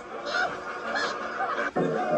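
Salacious Crumb's cackling creature laugh, voiced by Mark Dodson, in two short bursts. It is cut off near the end by a sudden switch to other audio.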